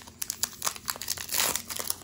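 Foil booster-pack wrapper crinkling and crackling as fingers pull the cut top apart and slide the trading cards out. It is a rapid run of small sharp crackles, densest about a second and a half in.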